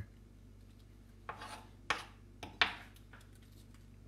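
A metal spoon scraping the choke out of a grilled artichoke heart: a short scrape, then a few sharp clicks and scrapes about two seconds in, the last the loudest.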